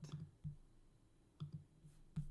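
A few faint computer mouse clicks, spaced irregularly, as elements are selected in the editor.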